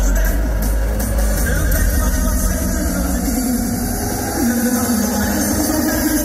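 Loud electronic dance music over a festival sound system. The heavy bass thins out through the middle while a held synth note sustains, and the full bass comes back in right at the end.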